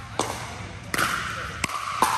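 Plastic pickleball being hit back and forth with paddles: three sharp pops about three-quarters of a second apart, each followed by the echo of the large hall.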